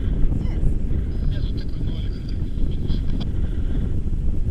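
Airflow buffeting the camera's microphone in flight under a tandem paraglider, heard as a steady low rumble.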